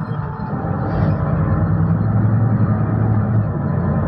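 Solaris Urbino 12 city bus's engine and drivetrain running as it drives, heard from inside near the front: a steady low drone that grows louder about a second in and then holds.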